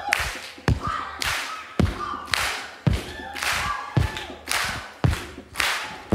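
Stripped-down live blues breakdown: kick-drum thumps alternating with hand claps on the backbeat, about two beats a second, with no other instruments playing.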